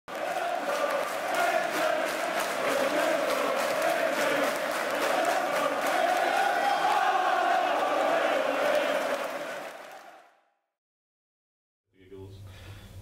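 Large football crowd singing a chant together in a stadium, fading out near the end.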